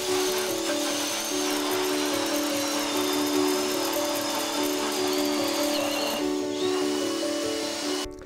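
Background music over a cordless drill driving an ice auger through lake ice, a steady grinding with a faint high motor whine that steps down in pitch a couple of times. The drilling noise dips briefly about six seconds in.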